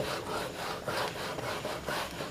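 Handheld whiteboard duster rubbing across a whiteboard, erasing marker writing in repeated back-and-forth strokes.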